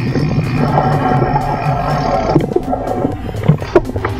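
Motor vehicle engines running close by, with a rumbling swell in the first two seconds, over background music.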